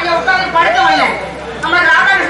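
Speech: a stage performer delivering dialogue in Tamil, with a brief lull a little past the middle.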